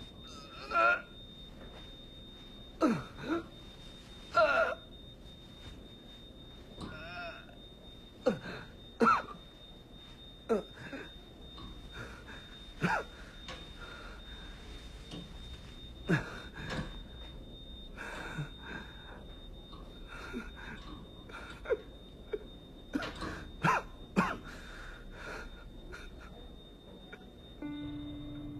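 A person's short gasps and groans every second or two, each sliding down in pitch, as a bandaged hospital patient struggles up from the bed. A steady faint high whine runs underneath.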